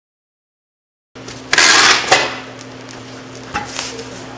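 A packed cardboard box being handled, after about a second of dead silence. A loud scraping rush lasts about half a second, followed by a knock and a couple of light clicks, over a steady low hum.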